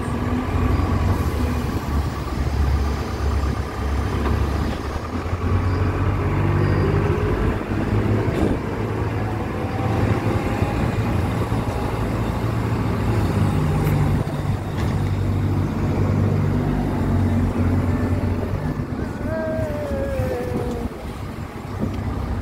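JCB telescopic handler's diesel engine running as the machine drives about, its note rising and falling with the throttle. A short whine falls in pitch near the end.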